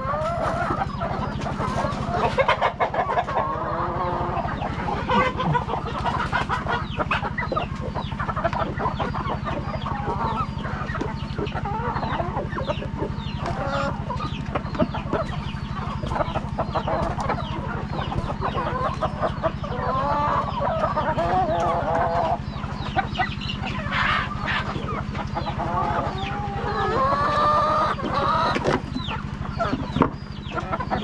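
A flock of brown hens clucking and calling continuously, many short overlapping calls, over a steady low hum.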